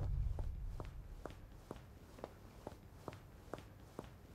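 Footsteps, hard shoe heels clicking on stone at a steady brisk pace of a little over two steps a second. A low rumble fades out over the first second or so.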